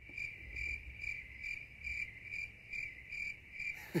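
Crickets chirping in a steady, evenly pulsing rhythm: the comic sound effect for an awkward silence after a joke falls flat.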